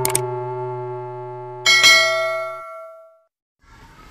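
Subscribe-button animation sound effects: a sustained electronic chord fading under a click just as the cursor hits the Like button, then about 1.7 s in a bright bell ding that rings out and fades, followed by a short silence and faint room noise.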